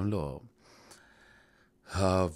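A man's voice finishes a word, then there is a soft intake of breath, a brief airy hiss in the pause, before he speaks again at the very end.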